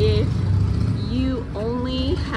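A woman's voice makes short, drawn-out hesitation sounds near the start and again in the second half, over the steady low hum of an idling vehicle engine.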